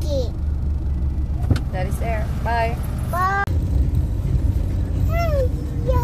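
A young girl's high-pitched voice making several short, gliding sing-song sounds without words, over the steady low rumble of a car heard from inside the cabin.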